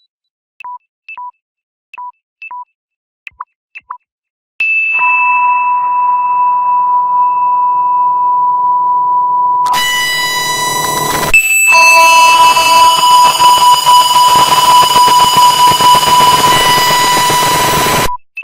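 Samsung low-battery alert sound, digitally altered: first played high-pitched as a few short, quick beeps, then drenched in heavy reverb so the notes blur into one long sustained ringing tone under a hissing wash. The reverberant wash turns louder and denser in the second half.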